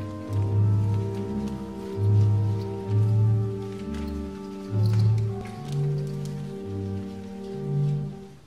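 Organ playing slow, sustained chords over a bass line that steps from note to note.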